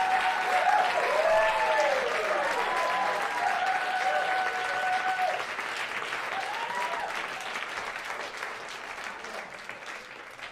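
Club audience applauding and cheering, with whooping voices and one long held call that stops about five seconds in. The applause dies away steadily toward the end.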